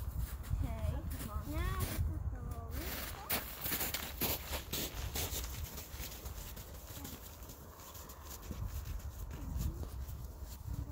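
Wind rumbling on the microphone, with a child's high voice rising and falling in the first couple of seconds, then a quick run of short crunching clicks about three to five seconds in.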